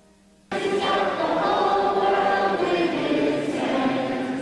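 Choir singing a sustained passage that starts suddenly about half a second in, after faint held keyboard tones.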